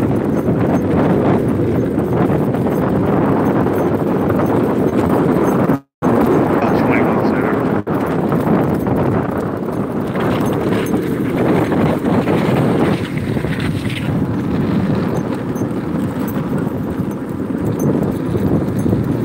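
Wheels of a dog-pulled rig rolling fast over asphalt: a steady rolling noise with a rapid rattle. The sound drops out for a split second about six seconds in.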